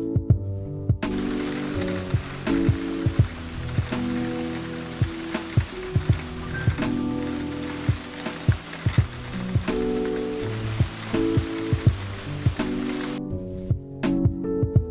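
Steady rain falling, a hiss heard over background music with a beat. The rain starts suddenly about a second in and cuts off just before the end.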